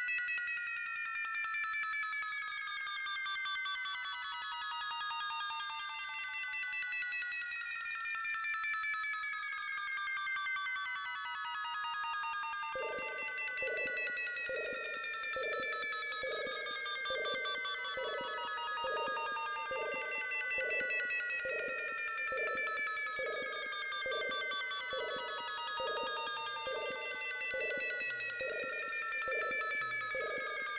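Opening of a 1992 Belgian trance-techno track. A stack of ringing synthesizer tones glides slowly downward in pitch throughout. About thirteen seconds in, a pulsing mid-range synth note enters and repeats in an even rhythm, and a few high ticks come in near the end.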